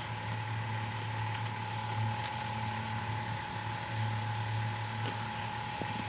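A steady low mechanical hum with a thin constant tone above it and an even hiss, with a few faint short clicks.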